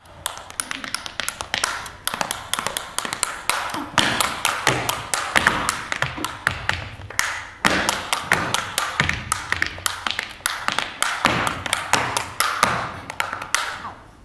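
Tap shoes striking a stage floor in a fast solo tap-dance passage: rapid, uneven clusters of sharp metal taps, with two short breaks, one about halfway through and another a few seconds later.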